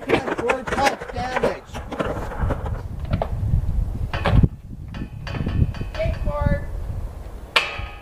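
Skateboard wheels rolling over wooden planks with a low rumble, with a hard knock of the board about four seconds in and another near the end. Shouting voices come at the start.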